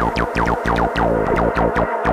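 Techno DJ mix: a synth line of quick falling pitch sweeps repeating about three times a second over a steady pulsing bass.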